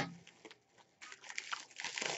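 A plastic mailer bag crinkling as it is handled and opened, a run of quick irregular crackles in the second half after a near-silent first second.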